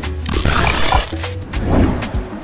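Show intro jingle: electronic music with a heavy bass and sharp hits, and a loud, roar-like noisy burst about half a second in.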